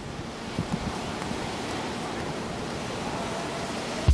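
Steady rush of ocean surf and wind on a beach.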